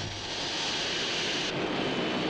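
Jet airliner engines running steadily: a broad rushing noise with a faint high whine, whose upper hiss drops away suddenly about three-quarters of the way through.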